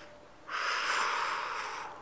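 A person's loud breath or gasp close to the microphone, a rush of air that starts suddenly about half a second in and lasts over a second.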